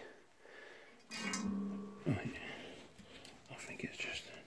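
A man's voice, quiet and wordless: a low hum held for about a second, then soft muttering.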